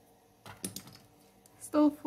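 A few quick, light clicks and taps about half a second in, drawing tools knocking together as they are put down and picked up. Near the end a woman starts to speak.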